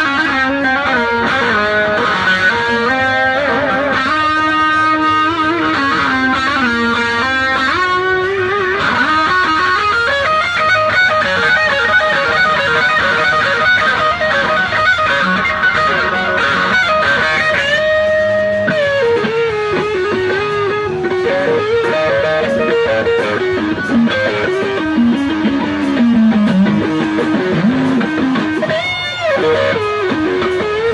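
Electric guitar, a 1964 Fender Stratocaster through a vintage Fender tube amp, playing improvised single-note lead lines with long sustained notes, string bends and wide vibrato.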